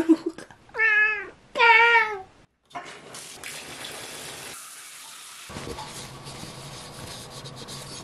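A domestic cat meows twice in quick succession. After a short gap, water runs steadily from a tap.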